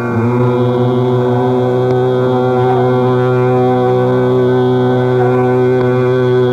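Hindustani classical music in Raag Megh: a steady, unbroken drone under a slow melodic line that slides between notes.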